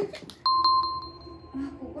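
A bright bell-like chime, struck about three times in quick succession and then ringing out for about a second on one clear pitch.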